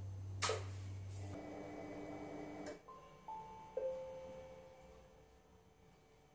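A sharp click, then a few soft musical tones: a held chord, followed by single notes stepping down in pitch that fade out over the last seconds.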